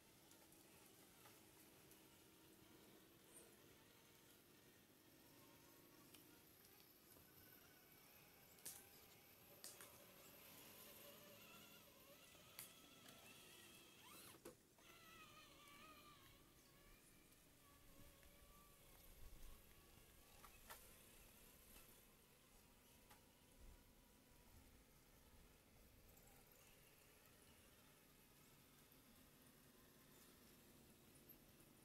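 Near silence: faint outdoor ambience with a few soft clicks and, in the middle, some faint wavering whines.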